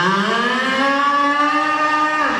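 A woman's voice holding one long note into a microphone, sliding up at the start and then steady for about two seconds.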